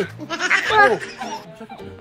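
A man's voice in a drawn-out exclamation, with music playing underneath.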